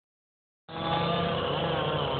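Chainsaw engine running steadily, cutting in about two-thirds of a second in as the recording begins.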